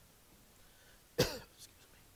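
A single cough about a second in, sudden and short, with a fainter short sound just after it, against quiet room noise.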